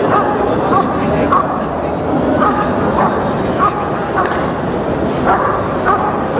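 A protection-trained working dog barking steadily and repeatedly at a helper standing in the hiding blind, the bark-and-hold stage of a protection exercise. About one bark every half second to second.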